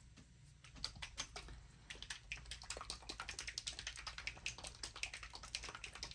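Light, irregular clicking of the mixing ball rattling inside a paint pen as it is shaken to mix the paint.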